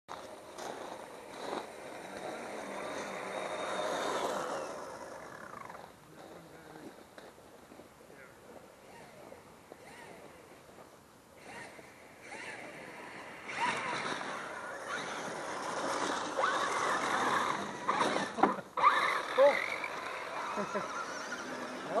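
Radio-controlled scale crawler trucks driving over loose gravel: electric motors whining up and down in pitch, with tyres crunching the stones. The sound swells as trucks come close, is loudest in the second half, and has a few sharp knocks near the end.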